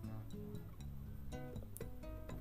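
Soft background music of plucked acoustic guitar notes.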